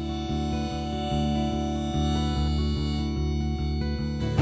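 Acoustic guitar strumming chords with a harmonica playing long held notes over it, in an instrumental break with no singing.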